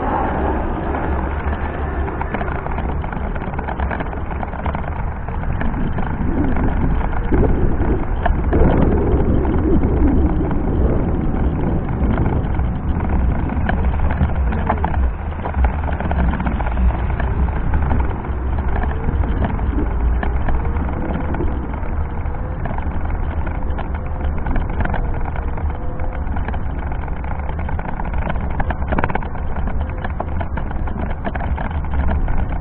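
Steady rumble and rattle of a Meyra Optimus 2 electric wheelchair rolling over brick paving, picked up through the chair-mounted action camera, with a faint wavering whine in the second half.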